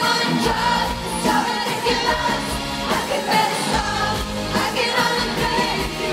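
Live pop-rock band playing, with a woman singing the lead vocal, recorded from the audience in a concert hall.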